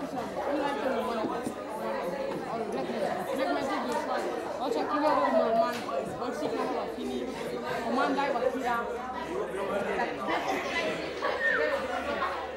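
Many students' voices talking over one another in a classroom, a steady chatter of group discussion with no single voice standing out.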